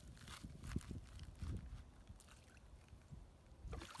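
A bowfin let go into a canal, splashing softly at the water's edge, with faint rustling of feet in dry pine straw.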